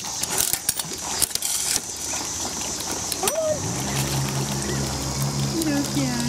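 Coin-operated feed dispenser being worked with a quarter: a quick run of clicks from its crank and coin mechanism in the first two seconds. A steady low drone starts about halfway through and carries on.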